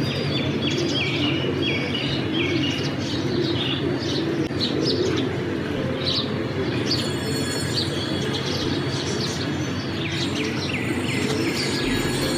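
Birds chirping in quick, short high notes throughout, over the low cooing of domestic pigeons.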